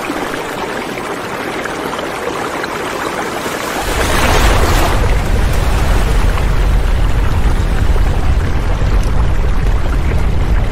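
A steady rushing noise; about four seconds in a deep rumble of earthquake shaking joins it and holds, with a brief louder surge just after it begins.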